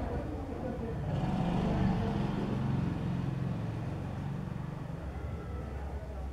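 A low rumble, like a motor vehicle going past, that swells about a second in and fades again over the next few seconds.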